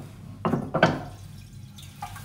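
Ceramic toilet cistern lid being set back in place, with two sharp clinks about half a second apart, then a faint trickle of water. The trickle is water running into the pan because the overlong button pin is holding the flush valve open.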